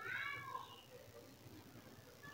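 A cat meowing once, faintly, in the first half-second: a single short call.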